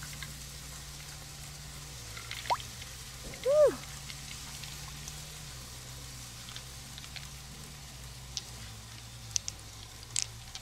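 Quiet wet handling of an opened giant freshwater mussel: a liquid plop about three and a half seconds in, a smaller one just before it, and a few faint clicks near the end as gold beads are picked from the shell, over a steady low hum.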